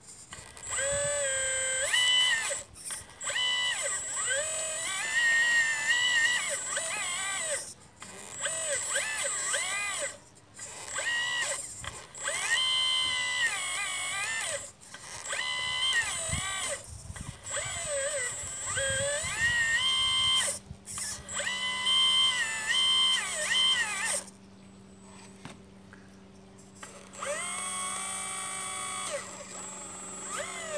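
1/12-scale RC Liebherr 954 excavator's electric motor whining in repeated bursts of one to three seconds as the arm digs and dumps; each burst rises in pitch as the motor spins up and falls as it stops. A fainter steady low hum joins about two-thirds of the way through.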